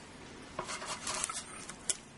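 Light plastic clicks and taps from a tower CPU cooler's push-pin fasteners being handled and turned on a motherboard, with one sharper click near the end.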